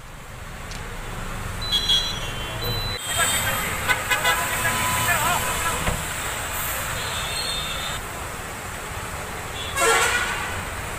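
Road traffic at a roadside checkpoint, with a steady engine rumble and car horns tooting in short bursts: a few toots about two seconds in, and a cluster of horns a couple of seconds later.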